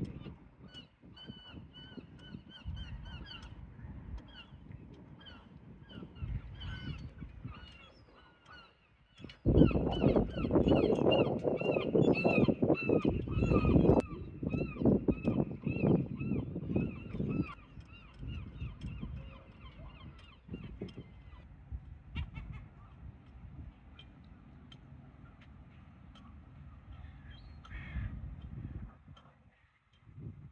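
Birds calling in a rapid series of short, high calls, thickest in the first two-thirds and thinning out after. In the middle, a loud stretch of low rushing noise lasts about eight seconds.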